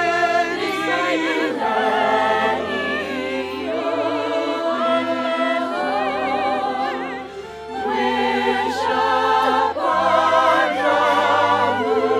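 A choir and solo voices singing a slow, sustained passage with vibrato, with the pit orchestra holding long low notes underneath. The sound dips briefly between phrases about seven seconds in.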